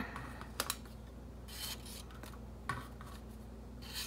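Quiet rustling of paper as a folded paper circle is handled and a paper strip is slid into it, with a few small ticks about half a second in and again near three seconds.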